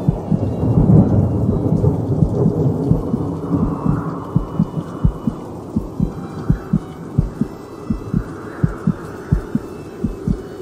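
Dramatic sound-designed soundtrack: a rumbling, thunder-like wash of noise over a steady pulse of low thumps, about three a second. The rumble is heaviest about a second in.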